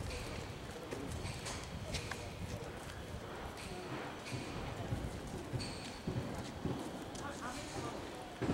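Irregular footsteps knocking on paving stones, over faint indistinct voices.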